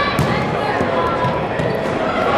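Players and spectators shouting and talking in a gymnasium, with a few sharp thuds of a volleyball on the hardwood floor or against hands.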